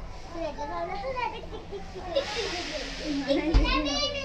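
Children's voices chattering and calling, with a short hiss about two seconds in and a dull thump near the end.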